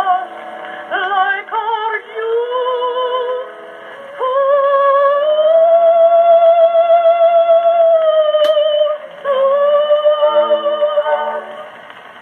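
Edison Blue Amberol cylinder record of a soprano singing over accompaniment, played back through an Edison phonograph's wooden horn. The sound is narrow and boxy, with no highs, as on an acoustic-era recording. The voice has a wide vibrato and holds one long note in the middle, and a single surface click comes about eight and a half seconds in before the sound fades near the end.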